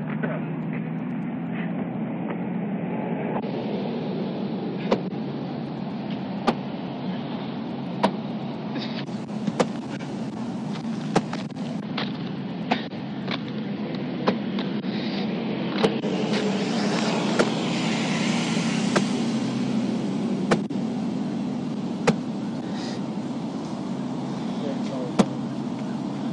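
Steady vehicle and roadway rumble as heard from a parked patrol car's dash camera, swelling for a few seconds mid-way as traffic goes by. A sharp click repeats at an even pace, about once every one and a half seconds.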